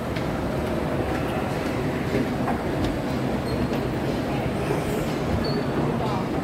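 Steady rumbling hum of a busy shopping mall's interior, with escalator machinery and ventilation and a few faint ticks.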